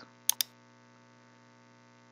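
Two quick computer mouse clicks about a third of a second in, over a faint steady electrical hum.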